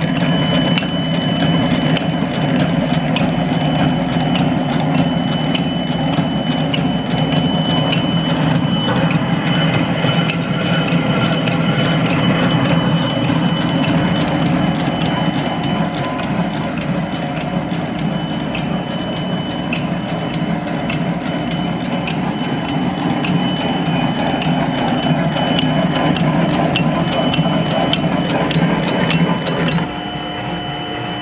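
Vanguard VSF-III semi-automatic capsule filler running: a steady machine hum with a thin high whine over it, and a regular clicking throughout.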